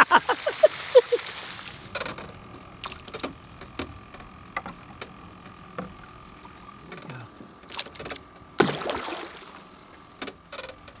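A man's laughter trails off. Then water splashes at the surface in scattered small strikes as bass take food offered on a feeding pole, with one louder splash about nine seconds in.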